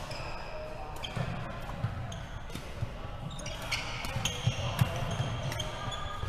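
A badminton rally: rackets striking a shuttlecock with sharp, irregular cracks, the two loudest about two seconds in and near the end. Between them come sneakers squeaking and thudding on the wooden court of a large, echoing sports hall.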